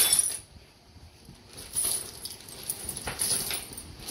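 A heap of old coins clinking and sliding against each other and the plastic bucket as it is tipped out onto a table. There is a brief rush of metal right at the start, a short pause, then a steady run of small jingling clinks from about two seconds in.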